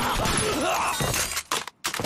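Loud, dense crashing and shattering sound effects in an anime fight scene. The crash cuts off abruptly shortly before the end.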